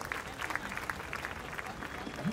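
Audience applauding, many hands clapping at an even level.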